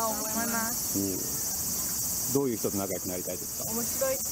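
A steady, high-pitched insect chorus, with short bits of a woman's speech in Japanese heard over it.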